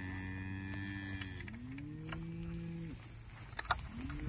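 Cattle mooing: a long moo that fades out about a second in, a second long moo soon after, and another starting near the end.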